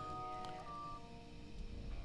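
Soft background music under a pause in the preaching: a few sustained instrument notes are held and then released one after another, fading away by the end.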